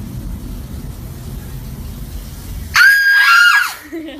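A woman's startled, high-pitched scream lasting about a second, starting near the end, over a low background rumble.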